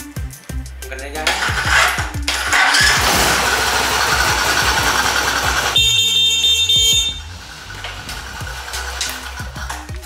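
A motorcycle's electric horn sounds once for about a second, about six seconds in, over background music. It is preceded by several seconds of loud, dense rushing noise.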